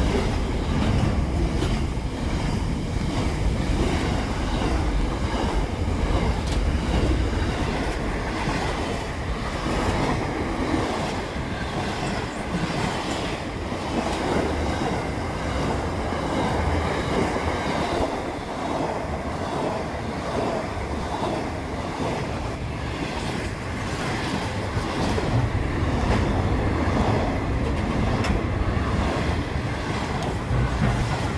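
Wagons of a long Pacific National intermodal freight train rolling past the platform close by: a steady, loud rumble of steel wheels on rail.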